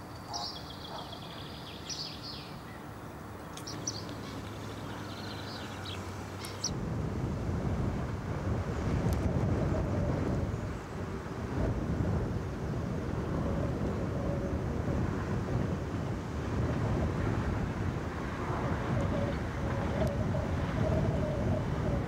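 Outdoor field recording: a few high bird calls near the start over quiet ambience, then from about seven seconds in a louder, steady low rumble of wind on the microphone mixed with a distant single-car diesel railcar running along the line.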